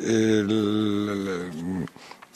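A man's voice holding one long, level hesitation sound, an 'ehh', mid-sentence, trailing off shortly before the next words.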